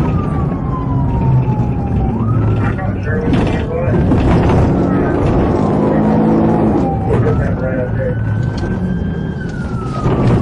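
Police siren wailing, its pitch sliding slowly down and then sweeping back up, twice, about 2 and 7 seconds in. Under it runs the pursuing patrol car's engine and road noise at speed.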